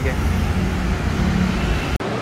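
Steady low rumble of road traffic, which cuts off suddenly at the end.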